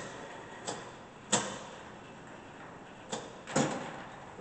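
Hardinge TFB precision lathe running at low speed, barely audible. Over it come four sharp clicks from handling its controls, the loudest about a third of the way in and two close together near the end.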